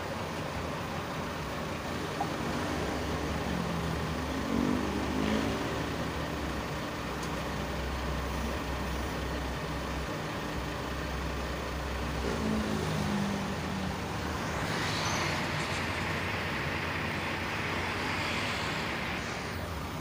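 Steady low rumble of road traffic, with vehicle engines rising and falling in pitch as they pass, about three seconds in and again about twelve seconds in. A broad hiss swells from about fourteen seconds in.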